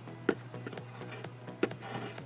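Quiet background music, with two short taps, about a third of a second in and again at about a second and a half, from hands handling friendship-bracelet strings against a cardboard board.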